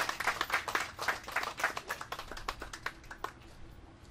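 A small audience applauding, with individual hand claps, thinning out and stopping about three seconds in.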